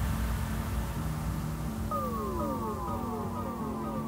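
Electronic background music: a steady low drone with a repeating run of falling synth glides starting about halfway through.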